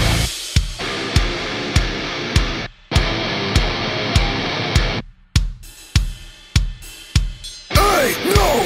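Hardcore punk band playing an instrumental passage: distorted guitars, bass and drums striking heavy kick-and-snare hits about every 0.6 s. The band stops dead twice, briefly, and the hits near the end come with the chords left ringing between them.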